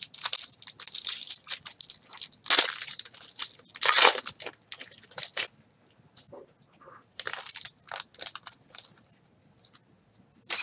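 Foil trading-card pack wrapper crinkling and tearing as gloved hands rip it open, in a run of short crackles that is loudest about two and a half and four seconds in. After a short pause, a second, lighter spell of crinkling follows.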